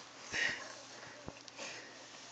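A short, breathy puff of air close to the microphone about half a second in, with a few faint taps.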